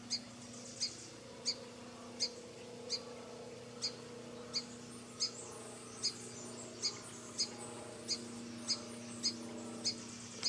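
A bird chirping over and over: short, high chirps evenly spaced about one and a half a second, over a faint steady hum.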